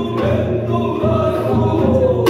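Binari, the Korean ritual blessing chant, sung in a gliding voice over a steady beat from barrel drums.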